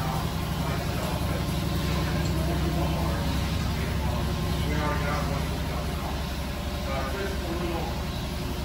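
Steady low machine hum, unchanging throughout, with indistinct voices in the room.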